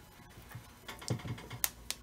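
Chicken wings being pressed and turned by hand in flour in a glass baking dish: soft low thuds and a few irregular sharp clicks against the glass, the loudest about three-quarters of the way in.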